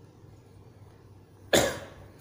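A single short, sharp cough about one and a half seconds in, over quiet room tone.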